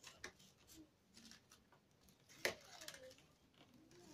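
Mostly near silence, broken by faint scattered clicks and rustles of a thin wicker strip being wound and pulled around a basket handle, with one sharper click about two and a half seconds in.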